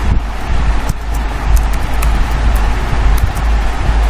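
Steady, loud low rumble with an even hiss over it, and a few faint clicks of computer keyboard typing.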